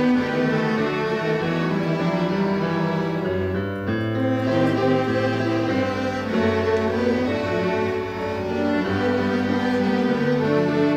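A middle school string ensemble of violins and cellos playing a piece together in sustained, bowed notes, the low strings holding long bass notes under the melody.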